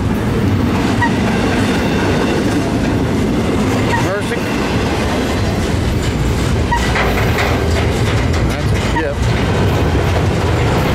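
Loaded double-stack intermodal well cars rolling past close by on the upgrade, with steady loud wheel-and-rail noise and clickety-clack from the trucks. A few short, high squeaks come through now and then.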